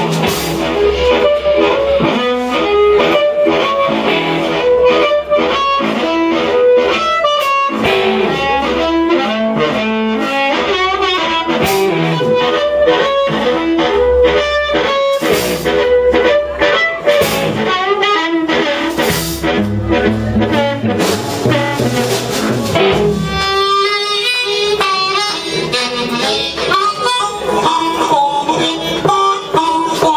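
Live blues band: a harmonica cupped against a hand-held microphone plays over guitar and drums. Near the end the band's low end drops back and the harmonica carries on with wavering notes.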